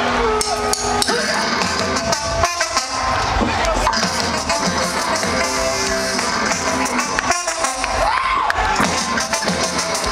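Ska-punk band playing live through a big outdoor PA, with drum kit, electric guitar and a horn section. The music stops briefly twice, about two and a half and seven and a half seconds in.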